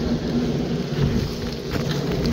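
JCB digger's diesel engine running steadily at idle, heard from inside the cab as a constant drone.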